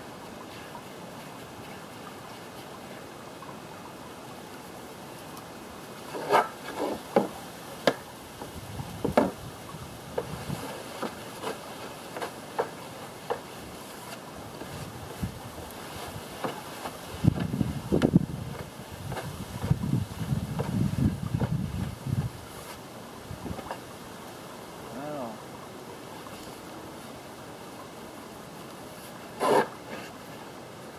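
Intermittent light clicks, taps and scrapes as epoxy resin is brushed from a metal paint tray onto a plywood panel, with a few seconds of low rumbling past the middle.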